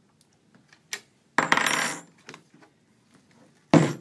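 Small metal tool clattering and clinking on a hard surface: a few light clicks, then a short ringing metallic rattle about a second and a half in, and a sharp knock just before the end.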